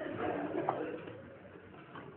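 A soft, low voice-like murmur in the first second, fading to quiet room tone.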